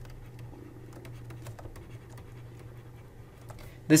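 A stylus writing on a digital tablet: faint, irregular taps and scratches as words are handwritten, over a steady low hum.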